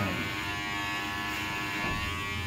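Electric hair clippers running steadily during a haircut, a constant hum.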